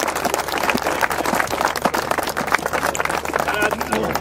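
A group of people applauding, many hands clapping at once.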